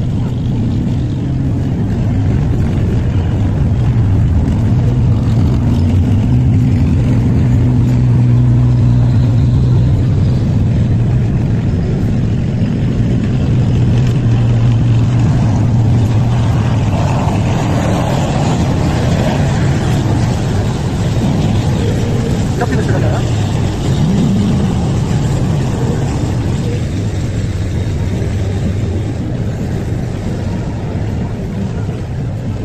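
Heavy diesel engines of eight-wheeled armoured vehicles driving past, a steady low drone that is strongest in the first half and eases off later.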